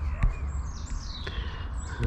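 A bird calling once, a thin high whistle falling in pitch over about a second, over a steady low rumble, with a single knock about a quarter second in.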